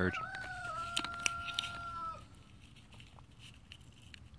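An animal's long, steady call lasting about two seconds, dipping slightly in pitch partway through. Two sharp clicks come near the one-second mark.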